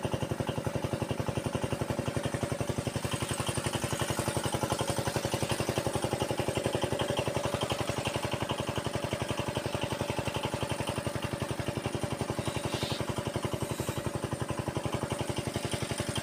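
Engine of an irrigation pump running steadily at an even, unchanging speed, with a regular beat of about seven pulses a second.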